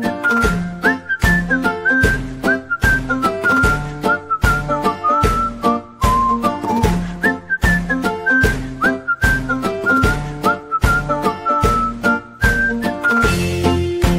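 Upbeat background music: a whistled melody over a steady, rhythmic accompaniment with bass.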